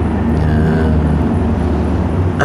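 A steady low rumble with a faint engine-like drone over it.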